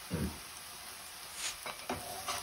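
Chopped onion and basmati rice frying in oil and butter in a pan, a faint, steady sizzle, with a single sharp click about a second and a half in.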